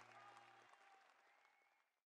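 Faint audience applause, many scattered hand claps, fading out to silence by the end.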